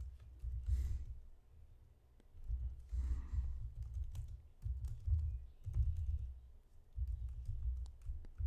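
Typing on a computer keyboard in irregular bursts of keystrokes, with a low thudding under the clicks.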